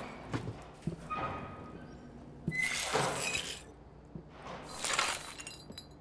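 Glass clinking and scraping with scattered small knocks, and two longer scraping swells about two and a half and five seconds in, in a large, echoing room.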